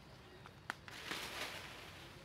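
A sharp twig-like snap, then about a second of leaf and branch rustling as a macaque moves among leafy branches.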